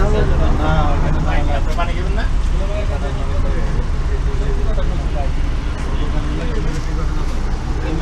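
Indistinct voices talking over a steady low rumble; the sound cuts off abruptly at the very end.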